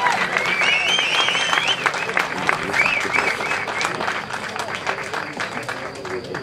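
Spectators applauding, with voices calling out over the clapping; the applause gradually thins out through the second half.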